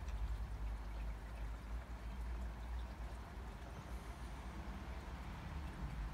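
Low steady background rumble with a faint even hiss, with no distinct events.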